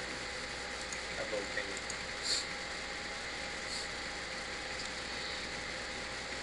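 Steady low hiss of room tone, with a faint brief voice fragment about a second in and a short soft hiss a second later.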